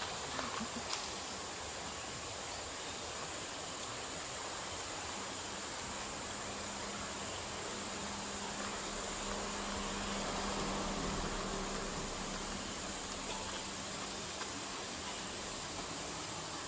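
Steady high insect drone over outdoor forest ambience. A faint low hum comes in about a third of the way through, swells slightly, and fades again.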